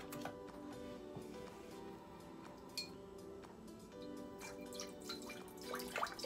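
Soft background music with steady held notes, and vegetable broth pouring and dripping from a carton into an empty slow-cooker crock, busier in the second half.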